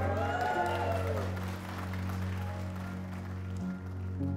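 Wedding guests applauding, with a cheer that rises and falls in the first second; the clapping fades out over the next few seconds under soft background music.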